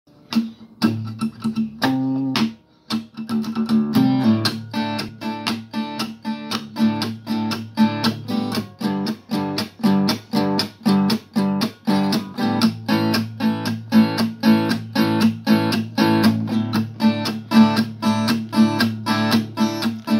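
Acoustic guitar strummed in a steady rhythm, about three strokes a second, as the instrumental intro to a song; it breaks off briefly about two and a half seconds in, then carries on.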